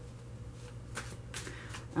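Tarot cards being shuffled by hand: soft card-on-card sliding with a few faint, irregular flicks.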